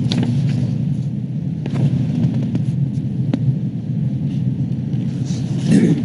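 Steady low rumble with a few sharp clicks, spaced about a second and a half apart.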